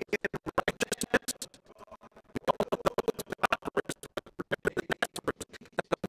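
A man's voice chopped into rapid, evenly spaced pulses, about nine or ten a second, by a digital audio glitch that makes the speech stutter and garbles it, with a short pause about two seconds in.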